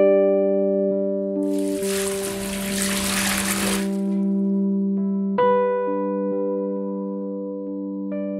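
Water poured from a plastic measuring jug into a stainless steel mixing bowl, a splashing rush lasting about two and a half seconds that starts about a second and a half in, over steady electric piano music that plays throughout.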